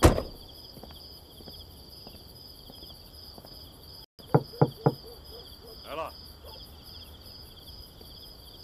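A car door slams shut at the start. Three quick knocks on a wooden door come about four and a half seconds in. Crickets chirp steadily throughout.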